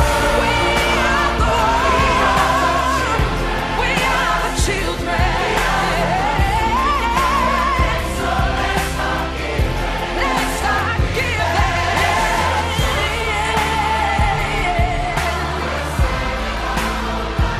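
Pop ballad sung by a large chorus of many voices, with a lead voice running wavering lines above it, over a steady bass and drum beat.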